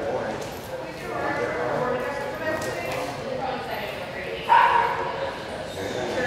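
A dog barking and yipping, with one sudden loud bark about four and a half seconds in.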